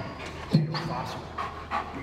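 Large dog panting.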